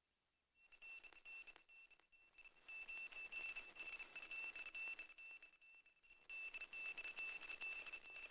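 A faint, steady, high-pitched tone that comes and goes, heard mostly in two stretches of a few seconds each.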